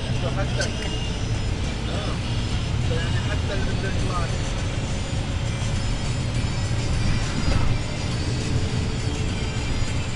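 Steady low rumble of a moving bus, heard from inside the cabin, with faint voices and music in the background.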